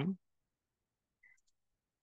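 A faint single keystroke on a computer keyboard a little over a second in, with near silence around it. The tail of a spoken word is heard at the very start.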